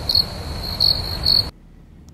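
Crickets chirping: a steady high trill with louder pulses about twice a second, over a faint night-time hiss. It cuts off suddenly about one and a half seconds in.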